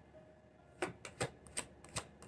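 Tarot deck being shuffled by hand: near silence at first, then from about a second in a run of several sharp, irregular card snaps and clicks.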